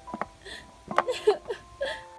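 A person's voice making about five short, sharp sobbing catches, like hiccuping sobs.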